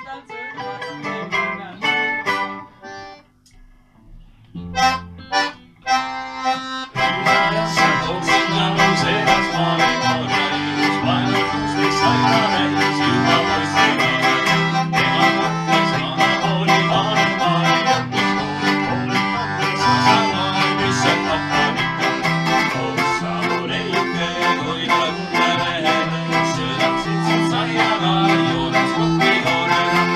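Folk medley played on acoustic guitar, mandolin and lõõts (Estonian button accordion). For the first several seconds there are a few separate notes around a short pause, then all three play together in a steady rhythm from about seven seconds in.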